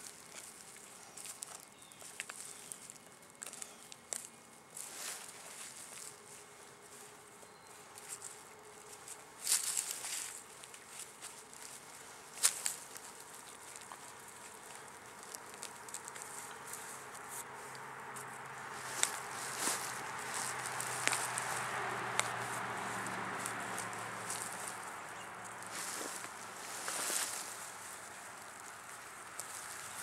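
Hand-digging in rocky soil with a digging tool and gloved hands: scattered scrapes, crunches and sharp clicks of the blade and fingers against dirt and stones. A steady low rumble swells and fades in the second half.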